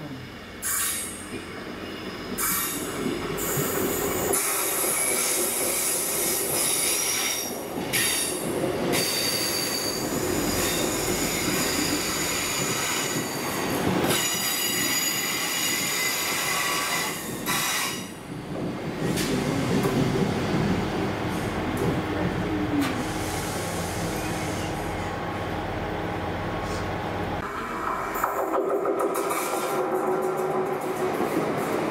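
Diesel multiple-unit trains, a Class 158 and a Class 170, running through a station on curved track: engine and wheel rumble with high, steady wheel squeal from the curve. The sound changes abruptly several times as the shots cut between passing trains.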